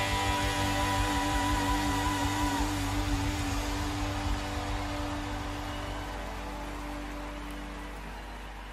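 Duesenberg Starplayer TV semi-hollow electric guitar letting its final notes ring out with a slight wavering vibrato and slowly fading. The higher note stops a few seconds in and the lower one sustains almost to the end, over a soft wash of reverb.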